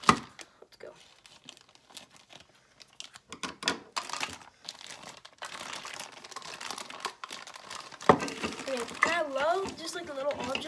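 Thin clear plastic bag crinkling and tearing as a small plastic toy piece is unwrapped. A sharp knock comes right at the start and another about eight seconds in.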